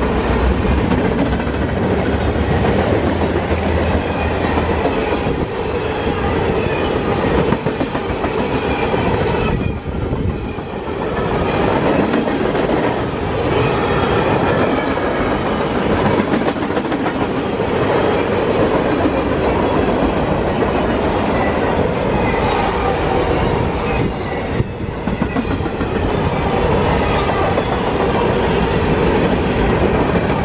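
Freight cars of a long mixed manifest train rolling past at speed: a steady, loud noise of steel wheels on rail, dipping briefly about ten seconds in and again near twenty-five seconds.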